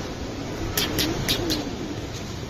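Steady rushing noise of running water, with four quick sharp clicks about a second in.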